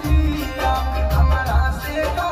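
Bhojpuri sad song: a young man's voice singing into a microphone over backing music with a steady low beat.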